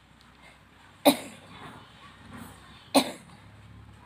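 Two short, sharp coughs from a sick boy, about two seconds apart.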